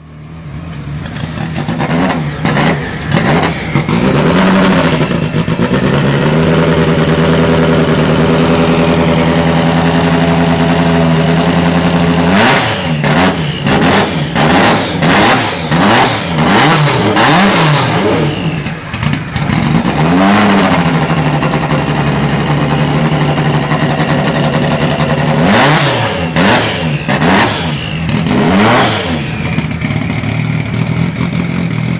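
Lancia Delta S4 rally car's engine running and being revved repeatedly in quick blips. Between the blips it holds spells of steady, raised idle.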